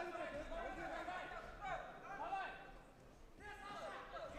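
People's voices talking and calling out, with a brief lull about three seconds in.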